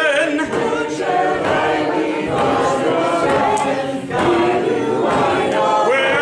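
Unaccompanied singing: long, wavering sung notes with no instruments, broken by a short pause for breath about four seconds in.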